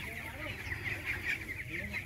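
A flock of young broiler chickens, about 25 days old, peeping and cheeping softly together.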